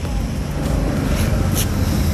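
Steady low rumble of outdoor background noise, with a brief faint hiss about one and a half seconds in.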